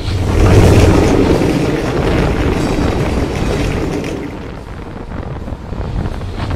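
Cinematic boom sound effect for an animated title card: a sudden deep boom that runs into a long, noisy rumble. The rumble fades over about five seconds and swells again near the end.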